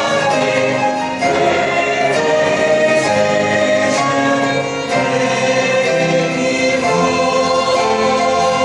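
Mixed choir of men's and women's voices singing a hymn in held chords that change every second or so.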